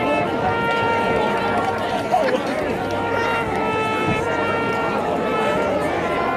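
Marching band playing long held chords that change every second or two, with spectators chattering nearby.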